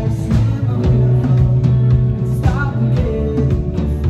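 Live rock band playing: electric bass holding low notes under electric guitar, with drum and cymbal hits keeping a steady beat.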